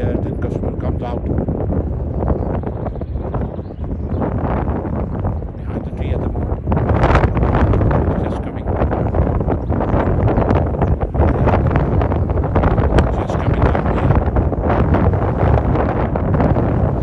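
Strong wind buffeting the microphone in heavy gusts, a ragged rumbling noise that gets louder from about halfway through.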